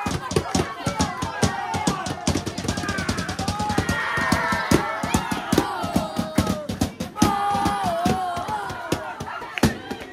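Snare and marching drums beaten fast and hard by young football supporters, with voices chanting and shouting over the drumming.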